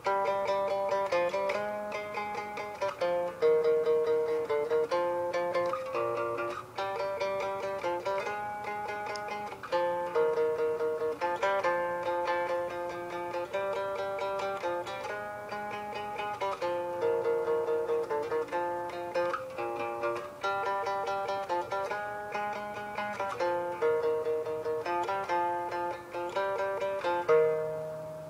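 Fender Precision electric bass played solo: a happy riff of quick plucked notes in repeating phrases.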